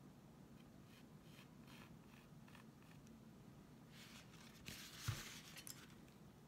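Near silence: faint scratchy handling sounds at a worktable, then a louder rustle with one soft thump about five seconds in.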